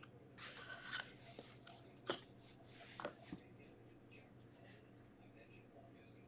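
Faint handling of a paper card and marker: a few soft rustles and small clicks in the first three seconds, then near silence.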